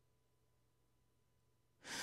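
Near silence with a faint steady hum, then near the end a woman draws a breath in at the microphone.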